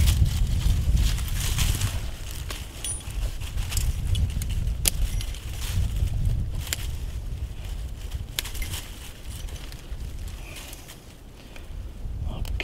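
Steel 220 Conibear body-grip trap and its chain clinking and rattling as they are handled, with scattered sharp metal clicks over a low rumble. The trap is being fought with and will not cooperate.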